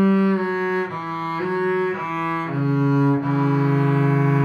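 Double bass bowed (arco), playing a slow, connected line of sustained notes in thumb position. The pitch changes every half second or so, then a lower note is held through the last second and a half.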